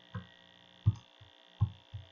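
Computer keyboard keys pressed one at a time, about four separate dull keystrokes at an uneven pace, over a steady electrical hum.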